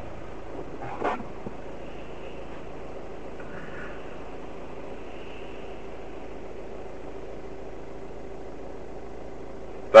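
Steady cabin noise of a car creeping forward at low speed, its engine running evenly with a faint steady hum, as picked up by a dashcam microphone inside the car.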